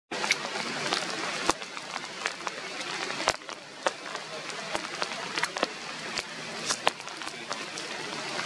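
Rain falling on the forest canopy: a steady hiss with irregular drips and taps on leaves.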